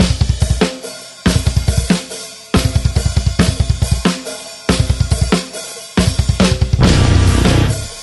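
Stoner metal band with guitars, bass and drum kit starting a track abruptly after silence. It opens with a stop-start riff: short bursts of rapid bass-drum and cymbal hits with chords left ringing between them, settling into a continuous heavy groove about six seconds in.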